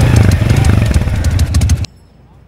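Motorcycle engine running loudly, cutting off abruptly just before the end.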